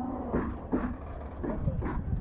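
A dog whimpering in short, repeated whines, two or three a second, over a low steady rumble.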